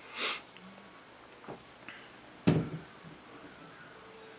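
Two short sniffs in a quiet small room, one at the start and a sharper one about two and a half seconds in, with a couple of faint clicks between them.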